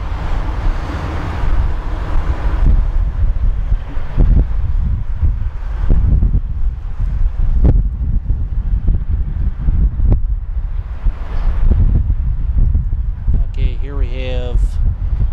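Wind buffeting the microphone: a loud, gusty low rumble with a few brief pops.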